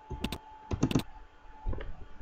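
Keystrokes on a computer keyboard as a number is typed in. Two quick taps come first, then a tighter cluster of several about a second in, and one more near the end.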